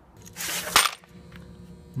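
Loose steel bolts rattling in a metal parts drawer: a short, noisy rush ending in a sharp metallic clatter just under a second in, then a few faint clicks over a steady electrical hum.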